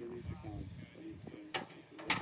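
Faint voices talking at a distance, with one brief sharp noise about one and a half seconds in.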